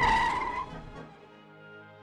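A car speeding away fades out over about the first second, leaving quiet background music with long held notes.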